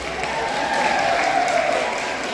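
Audience applauding, hands clapping in a steady patter.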